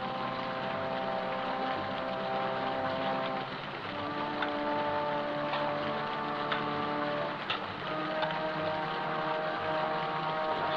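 Sustained chords of a film score, the held notes shifting about every three to four seconds, over a steady hiss of heavy rain and falling water, with a few light clicks in the middle.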